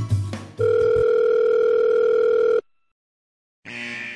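Telephone ringback tone: one steady two-second tone of an outgoing call ringing on the line, cutting off abruptly. Music ends just before it and starts again near the end.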